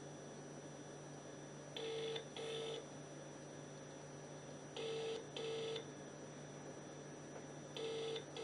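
Telephone ringback tone from a mobile phone: the double 'brr-brr' ring, heard twice in full and starting a third time near the end, with pauses of about two seconds between. It means the called phone is ringing and the call has not yet been answered.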